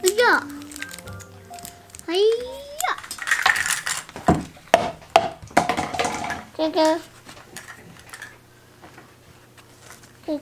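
A small child's voice in short squeals and babble, with rising calls. Around the middle there is a burst of clattering and rustling as objects are handled.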